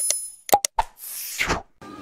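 Click-and-whoosh sound effects of a subscribe/share button animation: a click with a short, bright, ringing ding, three quick mouse clicks, then a whoosh that swells and cuts off about a second and a half in.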